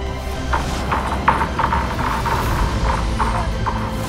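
Background music, with a run of short, irregular taps in the middle.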